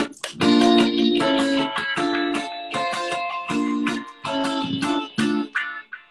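Electric guitar playing short, rhythmic chord strums through a multi-effects pedalboard, with a chorus and a light delay switched on, the delay trailing after the chords. The playing stops shortly before the end.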